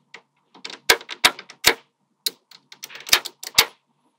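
Small magnetic metal balls clicking sharply as they snap together and onto a cylinder built of the same balls: an irregular run of quick clicks with short gaps.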